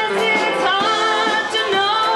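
A live band plays a song with a vocalist singing over it, with drums and cymbals keeping a steady beat.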